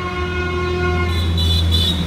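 A horn sounding one long blast at a steady pitch for a little over two seconds, over a low rumble, cutting off sharply.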